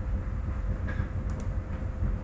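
Steady low background rumble with a faint steady hum, and two light mouse clicks near the middle.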